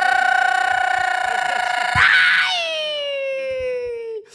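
A man's long, high-pitched scream into a microphone. It holds one pitch, turns ragged about two seconds in, then slides slowly down in pitch as it trails off.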